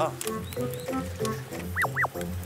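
Background music with a steady pulsing bass line. Near the end come two quick cartoon-style sound effects, each a fast swoop up in pitch and straight back down.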